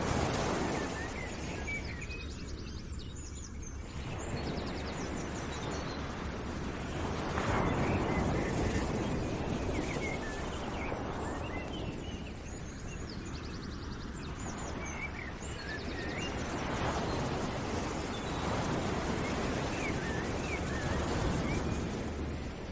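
Background nature ambience: a rushing noise that swells and fades every four to five seconds, with small birds chirping and trilling over it.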